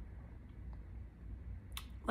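Low room hum in a pause between sentences, with one short sharp click near the end: a mouth click as the woman parts her lips to speak again.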